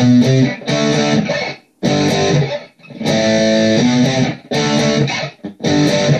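Electric guitar (SG-bodied Les Paul Custom) through tight, high-gain Marshall-style distortion, playing a chord riff in short ringing phrases. The chords are choked off between phrases, with brief breaks about two and nearly three seconds in.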